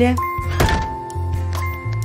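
Background music with held tones and a steady bass line. A single door-shutting thunk sounds about half a second in.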